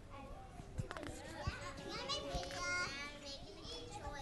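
Faint chatter and murmuring from an audience of young children, with one child's high voice standing out a little past the middle.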